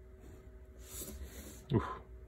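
A graphite pencil scratching briefly across paper as a line is drawn along a clear ruler, about a second in.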